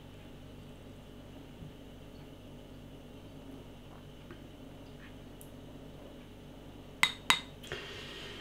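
Beer poured quietly from a glass bottle into a tall glass, the last of the bottle with its yeast sediment, then two sharp clinks of glass about seven seconds in.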